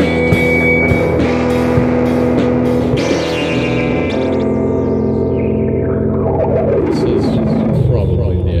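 Live rock band playing distorted, effects-laden electric guitar over drums. The cymbal and drum hits stop about three seconds in, leaving a sustained guitar drone. Near the end, the pitches slide steadily downward.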